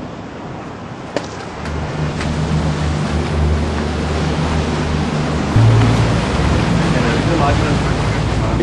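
Wind and sea noise on the open water under a low, steady musical drone. The drone comes in about two seconds in and changes note about halfway through.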